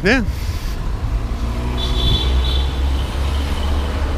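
A car engine running close by on the street, a low rumble throughout, with a faint engine tone that drops slightly in pitch over the first half.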